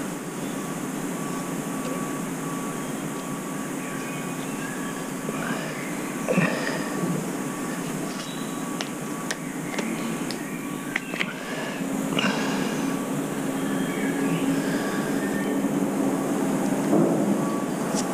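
Steady machine hum, like a fan or air-conditioning unit, with a faint steady tone in it. A few light taps and scrapes come from filler being worked into a hole in a fibreglass hull.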